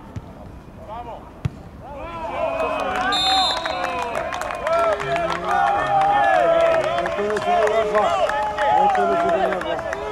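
A single sharp thud about one and a half seconds in, then several men shouting and cheering together, getting louder, as the players celebrate a goal. A short high whistle sounds about three seconds in.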